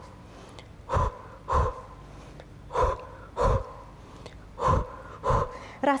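A woman's short, sharp Pilates breaths, taken two at a time ('double breath') with each leg switch of a hamstring pull. Three evenly spaced pairs, about two seconds apart.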